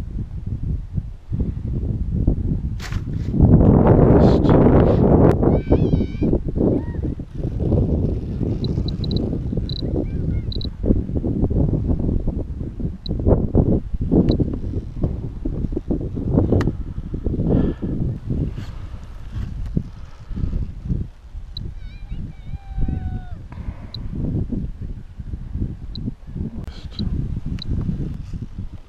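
Wind buffeting the microphone in gusts, strongest a few seconds in, with a few faint pitched calls further on.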